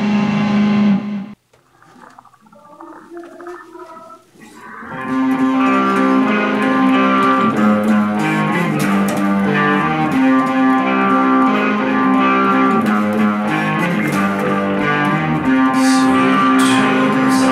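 Electric guitar music. A loud chord rings at the start and cuts off after about a second, quieter picked notes follow, and from about five seconds in the full guitar part plays steadily.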